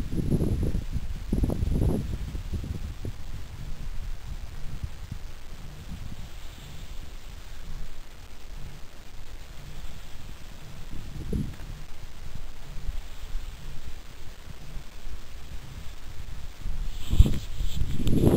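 Wind buffeting the camera microphone: a low, uneven rumble that rises and falls in gusts, strongest in the first couple of seconds and again near the end.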